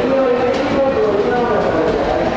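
JR West 201 series commuter train standing at a station platform with its equipment running steadily, while a voice talks over it.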